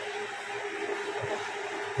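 Steady whirring hiss of the running power amplifiers' cooling fans, with a faint steady tone underneath.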